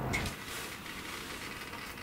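Steady, even background hiss with no distinct event.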